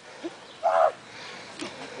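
A person's short vocal cry, about a quarter of a second long, a little over half a second in, against faint outdoor background.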